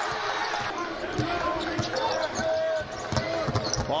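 A basketball being dribbled on a hardwood court, irregular bounces over steady arena noise.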